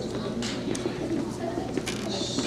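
Low, indistinct murmur of children's voices with a few brief knocks and rustles.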